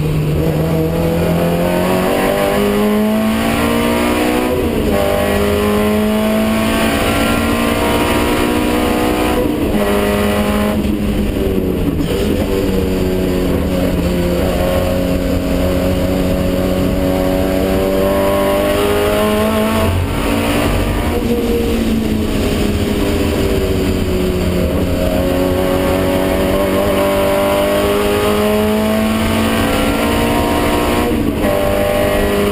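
Racing car engine heard from inside the cabin at speed. The revs climb repeatedly and drop back sharply several times, about a sixth, two-fifths and two-thirds of the way through, before climbing again.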